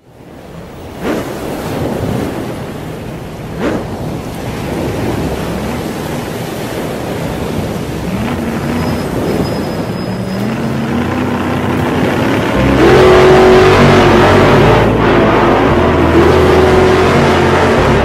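Cartoon sound effects: a wash of ocean waves with a couple of whooshes, then race car engines running and revving in rising steps, getting louder and denser in the second half.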